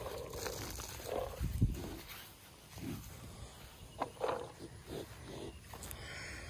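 Cattle close by making a few short, low sounds, with a soft thud about a second and a half in.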